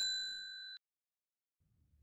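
A bell ding ringing out in a few clear, steady tones and dying away within the first second.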